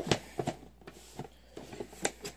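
Hard plastic toolbox being handled: a few short clicks and knocks, the sharpest right at the start and fainter ones after.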